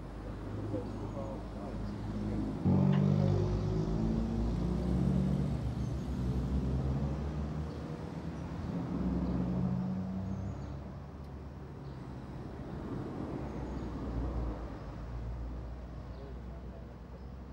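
A road vehicle's engine running close by, a low steady sound that steps up suddenly about three seconds in and then rises and falls.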